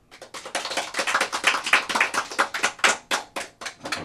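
Audience applauding: many hand claps close together, starting just after the start and dying away near the end.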